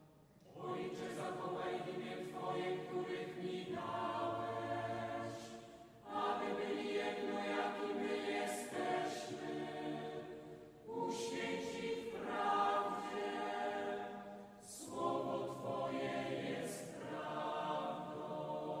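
Voices singing a church hymn during Mass, in four sung phrases with short breaks between them.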